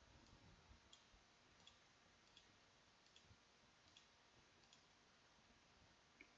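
Near silence with faint, evenly spaced clicks, about one every 0.7 seconds, fading out near the end.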